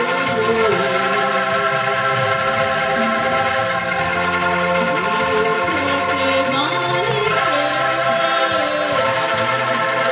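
An angklung ensemble, many tuned bamboo rattles shaken together, holding chords, with a voice singing a wavering melody over them.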